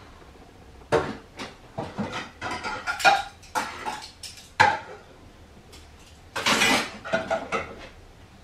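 Dishes and pots clattering and clinking as they are handled and set down during dishwashing, a run of irregular knocks starting about a second in. The loudest knocks come around the middle, with a short dense stretch of clatter near the end.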